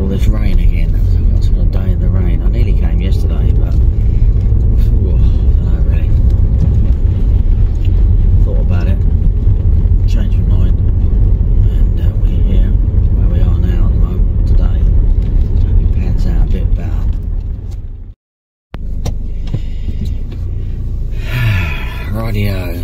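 Road noise inside a moving car: a steady low rumble of engine and tyres, with indistinct voices over it. The sound cuts out for a moment about eighteen seconds in and comes back quieter.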